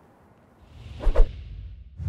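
Edited transition sound effect: a whoosh swells in from about half a second in, with a deep thump about a second in.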